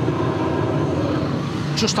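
Drain jetter's engine and pump running steadily while its high-pressure hose is worked into a blocked sewer pipe.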